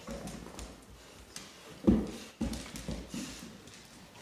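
A Cane Corso's paws and claws tapping and scrabbling on a hardwood floor as it grabs a toy, with a louder thump a little before halfway and a second one just after.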